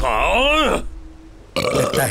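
A cartoon sage's single drawn-out, voiced burp. Its pitch rises and then falls over most of a second. It is the burp of a stomach filled by overeating.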